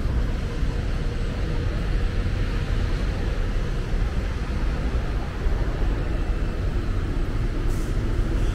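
Steady street traffic: a continuous low rumble of buses and cars moving along a busy city road.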